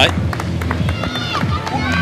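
Live race-broadcast ambience: runners' footfalls on the road and a steady low hum, with faint voice-like sounds toward the end.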